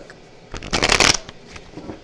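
A deck of tarot cards being shuffled by hand: a rapid run of card flicks lasting about half a second, starting about half a second in, then trailing off.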